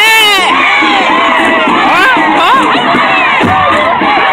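A crowd cheering and shouting, many voices yelling over one another, with a shrill scream at the very start.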